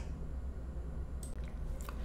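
Low steady hum of shipboard ventilation and air-handling machinery, with two faint short clicks in the second half.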